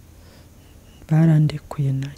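Speech only: a short pause, then a woman's voice resumes talking about a second in.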